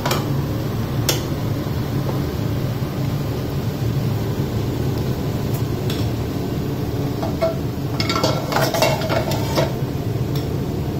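Cookware and utensils clinking on a gas cooker as fried fish is lifted from a frying pan onto a plate, with one sharp clink about a second in and a cluster of clinks and scrapes near the end, over a steady low rumble.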